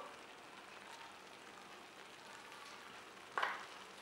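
Faint sizzling of a vegetable masala gravy cooking in ghee in a steel pan, at the stage where the ghee is separating out. A brief louder sound comes a little past three seconds in.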